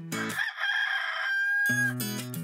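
Background guitar music breaks off for a high-pitched call lasting about a second and a half, ending on a held note, and then the music comes back in.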